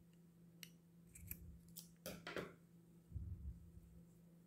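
Scissors snipping cotton crochet twine: several short, faint snips in the first two and a half seconds, then a soft low bump of handling a little after three seconds.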